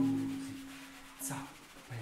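A hand-drum stroke rings out with a low tone and fades away over about a second and a half, followed by a couple of soft taps on the drums.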